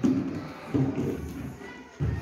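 Quiet, indistinct voices of young children murmuring, in short broken snatches that fade toward the end.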